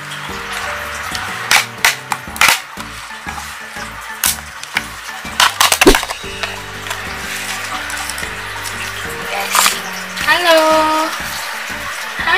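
Crinkling and crackling of crumpled paper packing and a clear plastic tub being handled, in a series of sharp crackles, the loudest about six seconds in, over background music.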